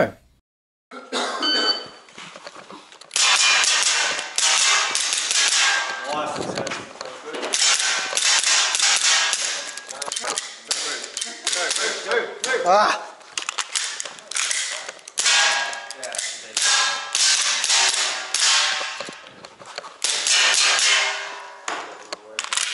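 APS Shark gel blaster pistol firing in quick runs of shots, with the clatter of its mechanism and gels hitting metal targets.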